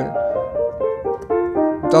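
A 1925 Blüthner upright piano, about 130 cm tall, being played: a short melodic phrase of notes changing several times a second, dipping lower in pitch and then climbing back.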